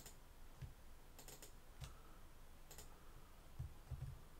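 Faint computer mouse and keyboard clicks: several short, sharp clicks at irregular intervals, a few of them bunched together about a second in.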